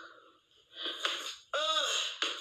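A person's voice: a short vocal burst about a second in, then a drawn-out vocal sound near the end whose pitch rises and falls.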